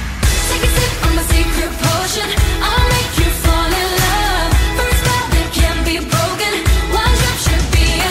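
A pop song playing: a singer's melody over a beat with heavy, pulsing bass.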